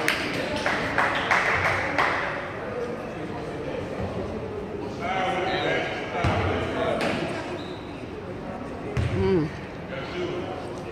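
A basketball bouncing a few times on a hardwood gym floor, mostly in the first couple of seconds, under indistinct voices of spectators echoing in the hall.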